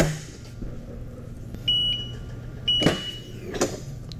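Heat press clamping down on a hoodie with a knock, a steady low hum underneath, then two short high beeps about a second apart and another knock as the press is opened.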